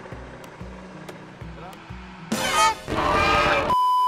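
Faint background music with a steady, repeating bass line, broken about two and a half seconds in by a loud, noisy burst, then a steady high-pitched test-tone beep, the tone that goes with TV colour bars, near the end.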